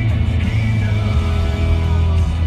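A song playing on the car radio inside a moving car, with a strong steady bass and some low road noise beneath it.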